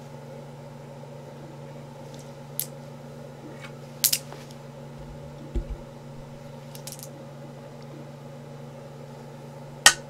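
Go stones being handled on a wooden Go board: a few light clicks as stones are picked up, and a sharp, loud click near the end as a black stone is set down on the board.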